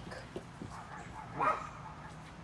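A dog giving one short call that rises in pitch, about one and a half seconds in.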